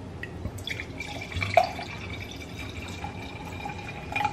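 Wine pouring from a bottle into a stemless glass: a steady pour with a clear high tone from about a second in, and one sharper knock about a second and a half in.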